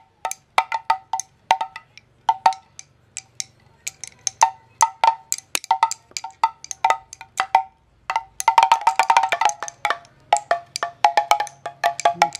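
Spinning monkey drum, a Mexican pellet drum, twisted back and forth so the beads on its cords strike the two drumheads in sharp taps with a short pitched ring. The strikes come unevenly, as from a first-time player, thinning out in the middle and bunching into a quick flurry about two thirds of the way through.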